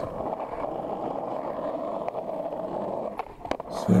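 Skateboard wheels rolling steadily on asphalt. Near the end the rolling briefly drops out around a couple of sharp clacks, the board popped into a kickflip and landed.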